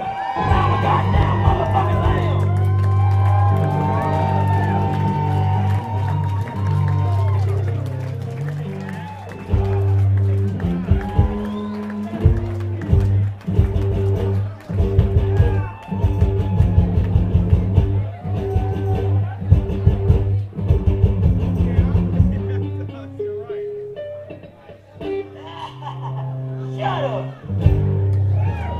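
Live amplified electric guitar music: low bass notes held under choppy, rhythmic strumming and picked lines, with a voice at times.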